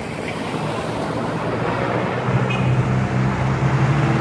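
A motor vehicle's engine on the street drawing closer, its low hum getting louder from about a second and a half in, over a steady rush of outdoor noise.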